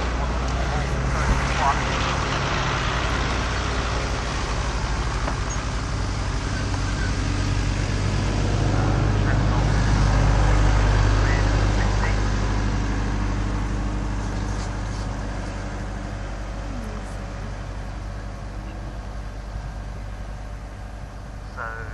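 Low engine drone that slowly builds to its loudest about halfway through, then fades away: a motor passing by.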